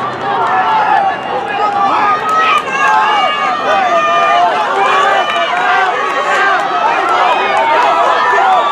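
Crowd chatter at an outdoor track: many overlapping voices talking at once, with no single voice standing out.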